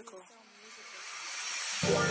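A song intro: a spoken voice tag trails off, then a hissing noise sweep swells steadily louder for about a second and a half, and guitar music comes in near the end.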